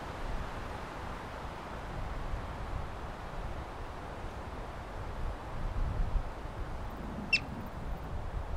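Wind rumbling on the microphone throughout. Near the end a yellow-bellied marmot gives one short, sharp chirp that falls quickly in pitch.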